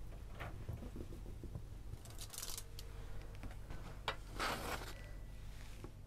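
Fork tines dragging a pat of butter across the crisp baked crust of a börek: a few short scratchy scraping strokes, the longest and loudest about four and a half seconds in, over a low steady hum.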